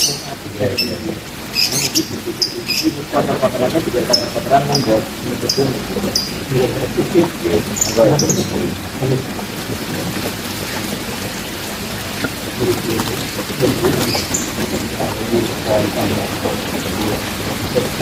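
A caged songbird chirping in short high notes, about one or two a second, through the first half, over a steady hiss of falling water and low murmured voices.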